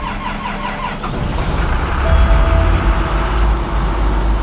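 New Holland CX combine harvester's diesel engine starting up and running, getting louder about two seconds in.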